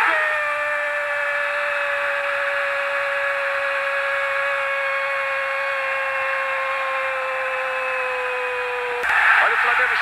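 A Brazilian football TV narrator's long drawn-out goal cry, "gooool", held on one note that slides slowly down in pitch for about nine seconds over steady crowd noise. It cuts off suddenly near the end.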